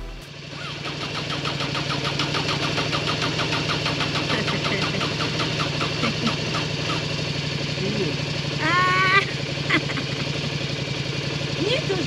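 Motorcycle engine idling steadily, with an even, pulsing beat.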